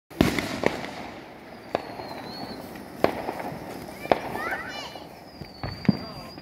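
A five-shot Roman candle firing, a series of sharp pops roughly a second apart.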